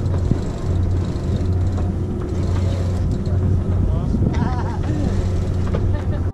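Wind buffeting the camera microphone on a sailboat's deck, a loud rumbling noise over a steady low drone, with faint crew voices in the background.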